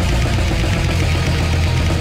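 Deathcore/death metal music playing loud: distorted guitars and drums, with most of the weight in a dense, steady low rumble.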